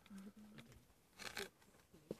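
Spotted hyena feeding on a carcass: faint tearing and chewing at meat and bone, with one brief louder rip a little past halfway.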